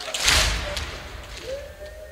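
Mourners' chest-beating (latm): one loud collective slap of hands on chests near the start, smeared over about half a second. A faint held vocal tone follows in the second half.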